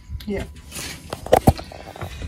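A brief hiss, then a few sharp clicks and knocks, the loudest two close together about a second and a half in: handling noise while working in the engine compartment to bleed the stalled engine, which is not running.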